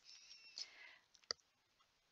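A single sharp computer-mouse click about a second in, against near silence.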